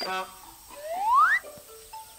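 A comic sound effect: a brief sound at the start, then a whistle sliding upward in pitch for about half a second, a little under a second in.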